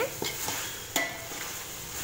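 A perforated metal spoon stirring and scraping chicken masala around a metal pot, with a light sizzle from the frying; one sharp knock of the spoon on the pot about a second in.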